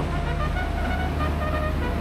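Renfe Class 599 diesel multiple unit running slowly past the platform as it arrives, a steady low engine drone.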